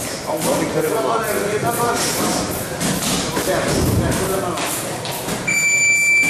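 Indistinct talking with repeated dull thuds. A steady high electronic beep starts near the end.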